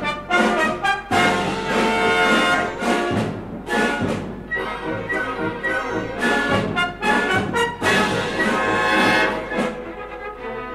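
Symphony orchestra playing a fandango, loud and lively, with frequent sharp accented chords.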